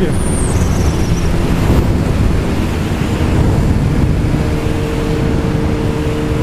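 Honda CBR1000RR inline-four sport bike engine running at a steady cruise on the highway, its even note under heavy wind rush on the onboard microphone; the engine tone grows a little stronger about halfway through.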